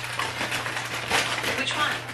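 Paper takeout bag and plastic food container rustling and crinkling as they are handled, over a steady low hum.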